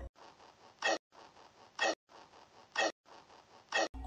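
Sound clip of Hachishakusama's repeated "po": four short, clipped sounds, about one a second, over a faint hiss. It does not sound like a noise a person would typically make.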